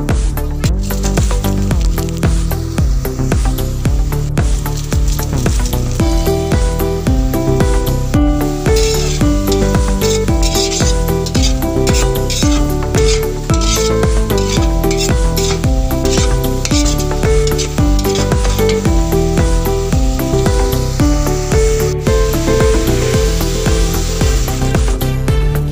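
Meat and vegetables sizzling in a hot wok as a metal spatula stirs them, under loud background electronic music with a steady beat.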